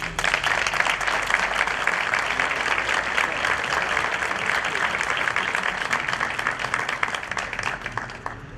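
An audience applauding: many hands clapping steadily, dying away just before the end.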